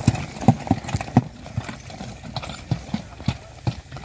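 A horse's hooves clopping on hard, dry ground as it hauls a heavily loaded cart. The knocks come quickly and loudly for about the first second, then grow sparser and fainter as the cart moves off.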